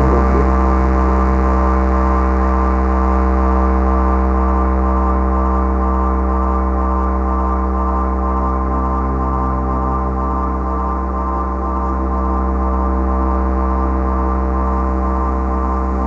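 Electronic music from a live techno set: a steady sustained synthesizer chord held over a deep bass drone.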